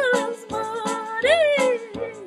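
A woman's voice singing a wordless, hummed melody with sliding notes, over backing music with a steady beat.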